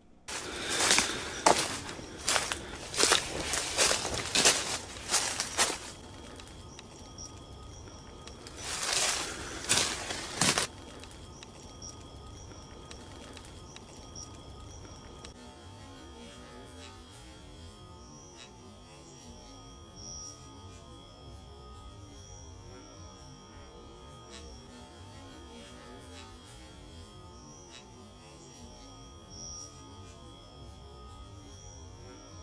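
Footsteps through dry leaf litter and brush, loud and irregular for the first six seconds and again briefly about nine seconds in. After that comes a quieter stretch with a faint, steady high-pitched drone.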